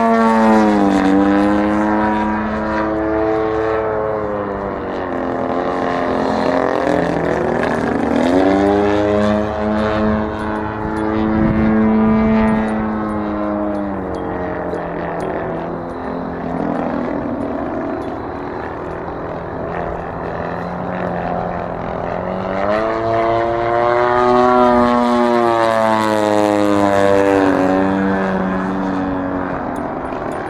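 GP-123 engine of a Hangar 9 Extra 300X radio-controlled aerobatic plane running in flight, a propeller-driven buzz whose pitch falls and rises several times as the plane manoeuvres.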